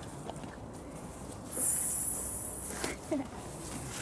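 A horse eating soaked feed from a plastic bowl. A high hiss lasting just over a second starts about one and a half seconds in.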